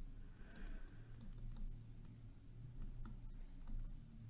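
Faint, irregular taps and scratches of a stylus writing on a tablet screen, over a low hum.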